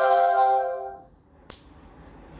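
Plucked guitar notes ringing on and dying away over about the first second, the tail of a strummed phrase. A single sharp click follows about a second and a half in.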